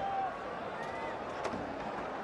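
Heavy rain pouring down, a steady hiss, with faint crowd voices in the background.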